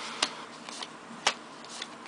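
Trading cards from a 2012 Topps Allen & Ginter pack being flipped through by hand, the card edges clicking as each is slid to the back of the stack: two sharp snaps about a second apart with a few fainter ticks around them.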